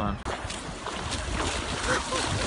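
Steady rush of wind on the microphone mixed with sea water splashing as a man runs through shallow surf, slowly getting louder.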